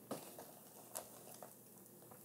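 Faint, soft rustling of a mat of live moss and its soil being handled and lifted off a plastic tray, with a light tick about a second in.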